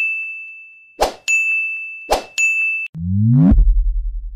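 Sound effects for an on-screen subscribe-button animation: a bright bell-like ding rings on, then twice a quick whoosh is followed by another ding. Near the end a rising swoop leads into a loud, deep, pulsing bass hit for the logo card.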